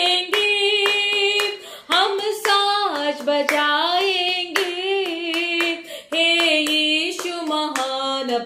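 A woman singing a Hindi worship song, holding long notes that slide between pitches, while clapping her hands in a steady beat.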